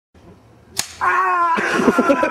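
A single sharp slap-like crack, followed by a person's loud, drawn-out yell or squeal that starts about a second in and continues.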